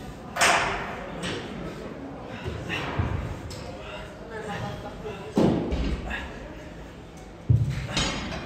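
Dumbbells knocking and thudding in a gym, three sharp impacts, about half a second in, about five and a half seconds in and near the end, the last one a deep thud, with voices around them.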